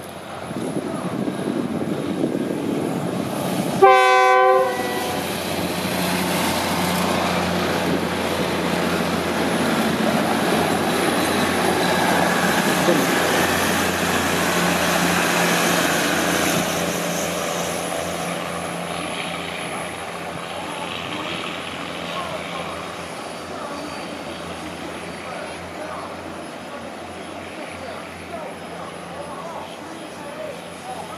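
Diesel multiple-unit passenger train of the State Railway of Thailand passing at speed. A short horn blast about four seconds in is the loudest sound. The rumble of the cars going by follows, loudest around the middle and fading toward the end.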